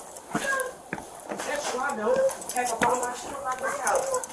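A dog whimpering and yipping in short, high calls, with one sharp rising whine about a second in, among indistinct voices.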